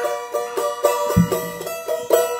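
A charango being strummed in a quick, steady rhythm of about four strokes a second, the same bright chord ringing on each stroke.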